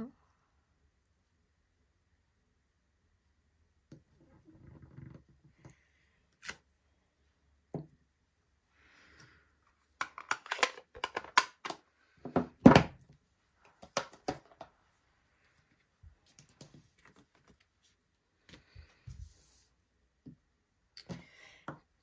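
Clear acrylic stamp block and plastic ink pad case being handled on a wooden craft table. After a quiet first few seconds come scattered clicks and knocks, a quick cluster of them, then one sharper thunk about halfway through, and a few lighter taps later.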